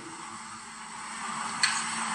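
A pause in a man's speech, filled by steady background hiss with a faint low hum underneath, growing slightly louder near the end.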